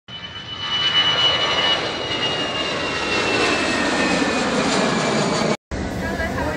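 Airbus A380 jet engines close by on the runway: a loud rush with a high whine that falls slowly in pitch. It swells during the first second and cuts off suddenly near the end.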